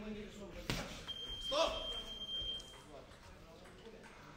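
A sharp knock, then a steady high-pitched electronic beep from the gym's round timer, held for about a second and a half, with voices around it.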